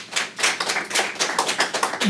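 Audience applauding: many hand claps in an irregular patter from a room full of people.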